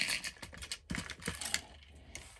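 Rapid light clicks and rustling for about a second and a half, fading near the end: handling noise as she reaches across the table, her clothing brushing close to the microphone, and picks up a fabric marking tool.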